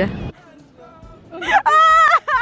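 A gull calling about one and a half seconds in: a single loud, high, wavering call lasting under a second, with a shorter bent note right after it.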